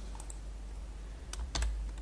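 A few keystrokes on a computer keyboard as a verification code is typed: a pair of light clicks near the start, then a few more clicks, one with a dull thud, past the middle.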